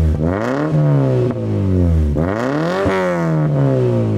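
1990 Toyota Sera's 1.5-litre inline-four revved twice from idle, its pitch climbing and falling back each time: a short blip, then a longer rev about two seconds in. A sharp click comes at the top of the second rev.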